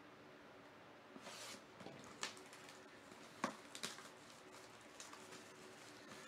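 Faint crinkling of clear plastic shrink wrap being pulled off a cardboard card box: a soft tearing rustle about a second in, then a few sharp, separate crackles of the film.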